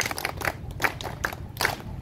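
A few people clapping, with sharp, uneven claps several a second.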